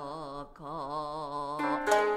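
Traditional Japanese music: a low male voice singing long held notes with wide vibrato, in two phrases broken briefly about half a second in. A sharp shamisen pluck comes in near the end.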